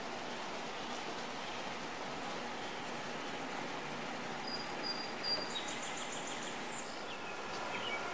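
Steady outdoor background hiss with birds calling past the middle: a thin high whistle, then a quick run of short high chirps.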